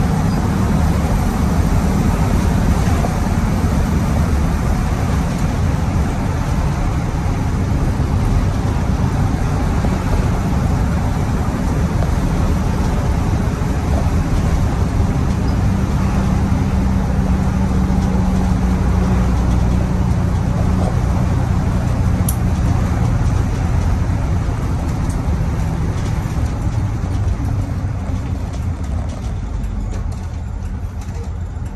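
Cummins 855 Big Cam inline-six diesel of a 1983 Crown tandem-axle bus running under way, heard from the driver's seat together with road and tyre noise. The engine note strengthens midway, and the sound drops off near the end as the bus slows.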